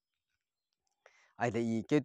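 About a second of silence, then a man's voice speaking.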